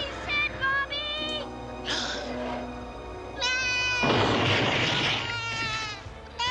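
Background music with a cartoon unicorn's high, wavering bleating cries. A loud rushing noise comes in about four seconds in and lasts about a second.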